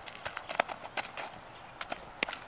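Footsteps on a dirt baseball infield: light, irregular clicks and taps, a few a second.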